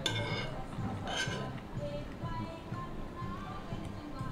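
Soft background music with a steady pulsing low beat, with two light clinks of cutlery on a dish at the start and about a second in.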